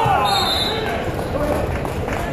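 Wrestlers' bodies thudding onto the gym mat as a takedown lands, with spectators shouting.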